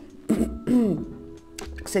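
A woman's voice making short wordless sounds with falling pitch, a hesitant 'ehh', over soft background music. A few small clicks come near the end.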